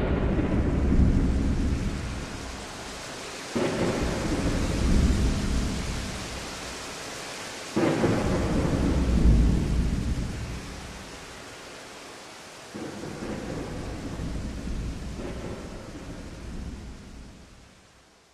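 Thunder rolling over steady rain. New claps break in suddenly three times, each rumbling away over a few seconds, and the storm fades out at the end.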